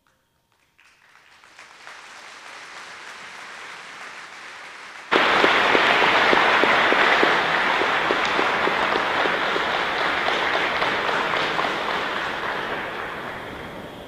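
Audience applauding, building from faint to steady over the first few seconds, then jumping suddenly much louder about five seconds in and slowly fading toward the end.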